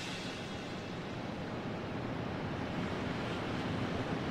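A quiet, even wash of noise in the song's instrumental break after the full band drops out, with no beat or melody, swelling slightly over the few seconds.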